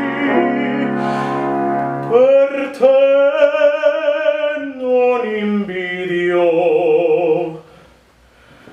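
A male classical singer sings in operatic style with piano accompaniment, holding long notes with vibrato. The line falls in pitch, and the phrase ends shortly before the end.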